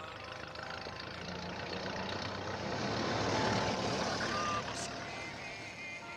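A motor vehicle passing by on a street: a broad engine-and-tyre noise that builds to its loudest about three and a half seconds in, then fades away. Soft film score music continues underneath.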